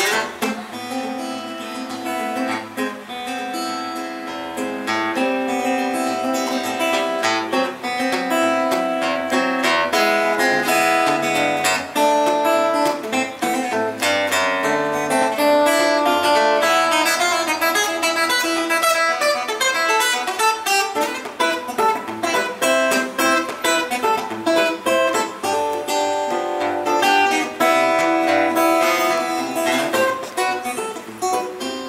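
Acoustic guitar played fingerstyle in the thumb-picking style: the thumb plays the bass notes while the fingers pick the melody and chords in between, a steady instrumental with quick, busy runs of notes.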